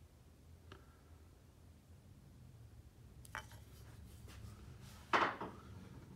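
Steel chisels being handled and set down on a wooden workbench: a few faint clicks, then one louder clink a little after five seconds in, over a faint low hum.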